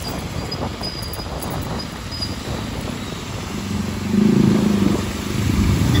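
Riding in traffic on a rain-soaked road: a rushing noise of tyres on wet tarmac and air. From about three and a half seconds a motorcycle engine's steady drone comes in and grows louder.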